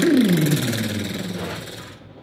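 A man voicing a fast drum roll: a rolling "brrr" that glides down in pitch over about half a second, then holds low and fades out.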